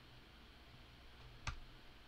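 One sharp computer mouse click about one and a half seconds in, over quiet room tone with a faint low hum.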